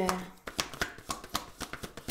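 A deck of angel oracle cards being shuffled by hand: a quick, irregular run of soft card clicks and slaps that starts about half a second in.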